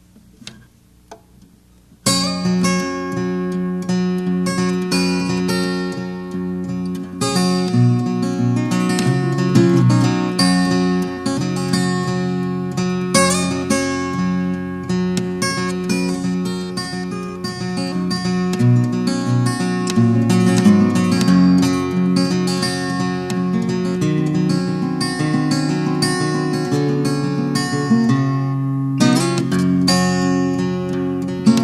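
Solo acoustic guitar, tuned to open E and capoed up to G, fingerpicked. It comes in about two seconds in, with low bass notes ringing under the picked melody.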